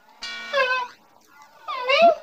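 High-pitched cartoon mouse voice making two short wordless squeaky sounds, the second near the end rising into a laugh.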